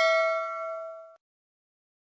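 A bell ding, the sound effect of a subscribe-button animation's notification bell, rings out and dies away, then cuts off sharply about a second in.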